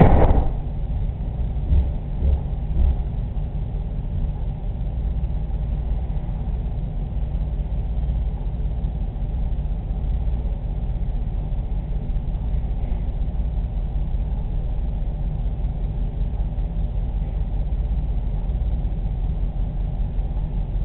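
Steady low rumble with a faint hum under it, after a sharp knock right at the start and a few dull thumps in the first three seconds.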